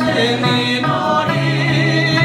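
A mixed group of men and women singing a song together in chorus, accompanied by a strummed acoustic guitar and a small plucked lute. A long note is held through the second half.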